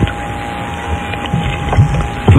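Crackling static and hiss from an AM radio broadcast recorded off the air, with a thin steady whistle running through it.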